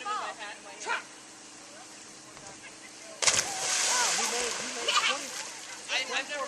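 A Chesapeake Bay Retriever hits the water of a dock-diving pool after leaping off the dock: one sudden loud splash about three seconds in, followed by about a second of splashing water as it fades.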